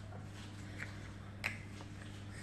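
Steady low hum of room tone, with one sharp click about a second and a half in and a fainter tick shortly before it.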